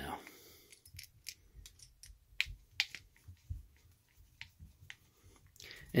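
Faint, irregular little clicks and ticks of a 2 mm hex driver being turned by hand in a round-headed screw, backing it out of a Traxxas Maxx's plastic spur gear on the cush drive.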